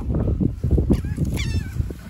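A bird's short call, falling in pitch, about halfway through, over the low rumble of wind on the microphone and a few light knocks.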